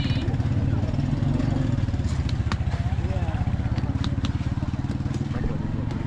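An engine idling steadily close by, with low voices and a few sharp taps over it.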